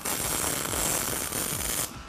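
Electric arc welding on steel plate: the arc crackles and hisses steadily, then cuts off just before the end.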